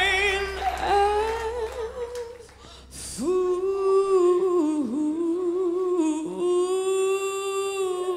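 Female vocalist singing into a microphone, holding long sustained notes with a slight waver. About two and a half seconds in she pauses briefly. After that the band's low end drops away, leaving her voice almost alone.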